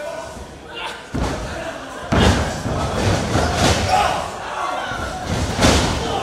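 Heavy thuds on a wrestling ring's mat and boards as two wrestlers grapple, about three impacts: near one second in, just after two seconds, and near the end, the last among the loudest.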